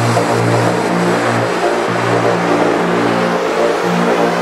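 Electronic dance music from a melodic/progressive house DJ mix: held synth bass notes that shift pitch every second or so under a dense synth layer.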